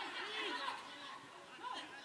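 Several people's voices overlapping in indistinct chatter and calls, words not clear.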